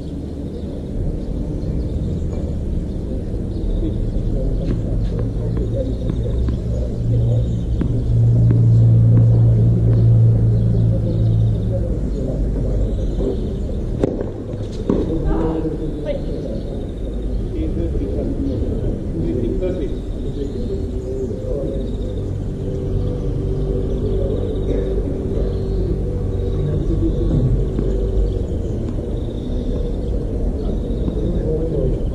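Outdoor ambience of a low rumble and distant voices, with a couple of sharp knocks about halfway through.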